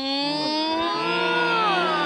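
Several voices hold one long, drawn-out vowel together, a group 'ohhh' reaction. A lower voice joins just after the first, and the pitches drift and glide a little.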